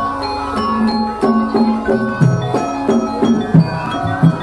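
Javanese gamelan music for a Lengger dance: ringing bronze metallophone notes over regular hand-drum strokes about every half second.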